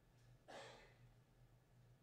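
Near silence: room tone with a steady low hum, and one short breathy sound about half a second in.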